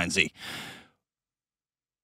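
A man's voice finishes a word, followed by a short exhaled breath, a sigh, into a close microphone. The breath fades out about a second in, and the rest is dead silence.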